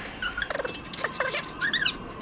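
Kittens mewing: about four short, high-pitched squeaky calls, some falling in pitch.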